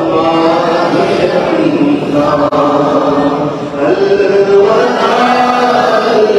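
A congregation of men and boys chanting an Urdu naat together without instruments. One male voice leads through a microphone, and the group holds long, gliding sung notes.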